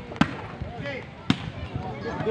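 Two sharp smacks of a volleyball being struck, about a second apart, over crowd chatter.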